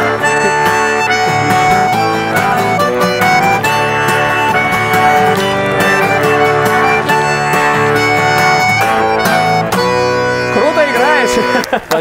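Bayan (Russian button accordion) playing a run of held chords and melody with an acoustic guitar strummed along. Near the end the playing thins out and voices come in.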